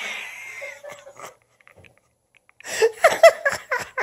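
A woman laughing: a breathy laugh tails off at the start, then after about a second of quiet a fresh run of quick, short laughs, about five a second.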